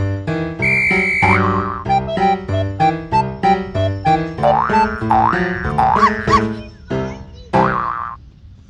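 Upbeat children's background music on keyboard, short notes in a steady bouncing rhythm, with several quick rising glide sound effects over it. It fades down near the end.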